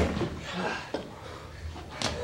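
A loud group heave shout dying away, then men's low straining sounds as they lift a loaded wooden sledge, with one light knock about a second in.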